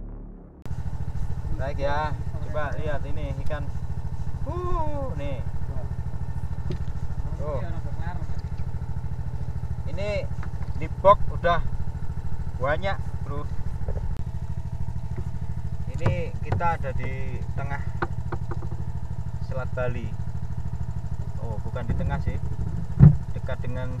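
Small generator engine on a fishing boat running steadily, a constant low hum, with people talking over it. Two sharp knocks stand out, one about midway and one near the end.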